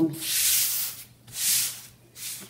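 A hand rubbing across a sheet of craft foam, in two long sweeping strokes that make a dry hiss.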